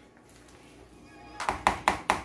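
A mixing utensil stirring a moist cornbread dressing mixture in an enamel bowl: quiet at first, then, about a second and a half in, a quick run of sharp clicking strokes against the bowl, about five a second.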